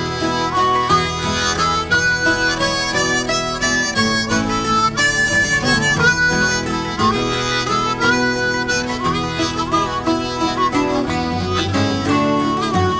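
Instrumental break in an Irish folk ballad: a harmonica plays the melody, with bent notes, over a strummed guitar accompaniment.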